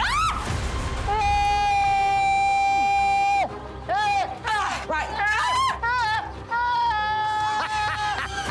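A person screaming: a short cry, then one long high scream held on a steady pitch for about two seconds, followed by a string of short shrieks and yelps, over background music.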